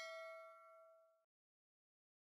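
A bell-like ding sound effect from a subscribe-button animation's notification bell, ringing with a few clear tones and fading, cut off about a second and a quarter in.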